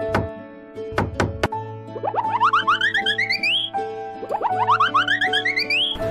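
Cartoon sound effects over bouncy children's background music: a few quick knocks early on, then twice a fast run of short notes climbing steeply in pitch, each lasting about a second and a half.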